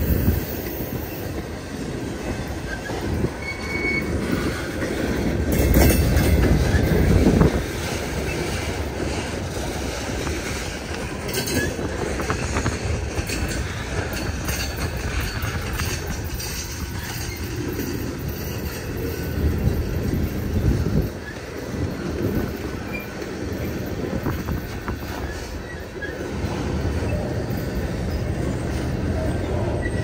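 Freight cars of a manifest train rolling past, a steady rumble of steel wheels on the rails that swells for a couple of seconds about six seconds in.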